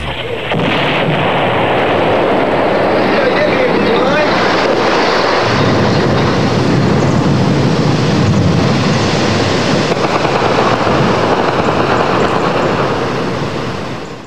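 The Old Bridge of Mostar being shelled and collapsing: a long, dense rumble of falling stone and debris, heavier in the low end from about halfway through, fading out at the very end.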